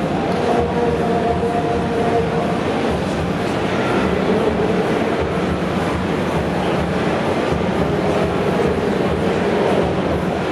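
Steady din of a crowd in a large hall, with a drawn-out shout early on and no clear speech.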